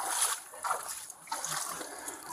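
River water splashing and sloshing in a few short bursts as someone moves in it, picked up by a body-worn camera's microphone.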